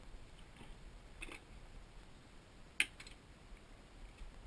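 A few faint clicks and light taps as hand tools are handled, with one sharp click about three quarters of the way through.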